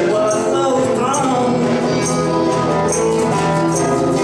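Live band playing a song with guitars and singing, a tambourine striking on the beat about twice a second.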